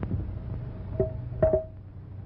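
Two sharp knocks about half a second apart, the second louder, each with a brief ringing tone, as of something hard struck or set down on a wooden table or chair.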